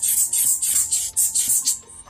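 Rubber bulb air blower squeezed by hand, giving a quick series of short hissing puffs, about four a second, to blow dust out of a drone's motor; the puffs stop just before the end. Faint background music underneath.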